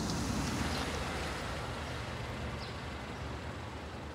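Street traffic: a car passing close by at the start, over a steady low rumble of traffic that eases off slightly.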